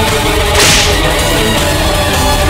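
One lash of a braided leather whip about half a second in, a sharp swish that dies away quickly. It is heard over background music with held notes.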